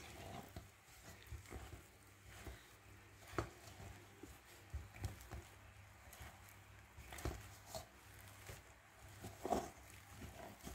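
Wooden spoon mixing a crumbly flour-and-dhal dough in a stainless steel bowl: faint, irregular knocks and scrapes of the spoon against the metal, the sharpest about three seconds in and near the end.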